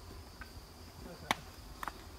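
Steady high-pitched drone of insects in the forest. A single sharp click sounds a little past a second in, with fainter ticks near the end.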